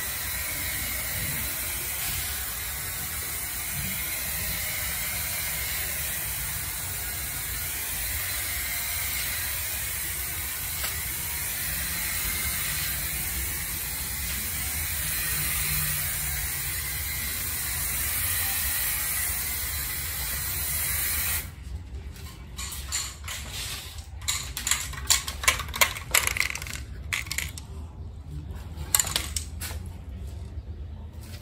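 Aerosol spray can of primer, worked by a trigger grip, spraying with a steady hiss for about twenty seconds. The hiss then cuts off, and a run of irregular clicks and knocks follows.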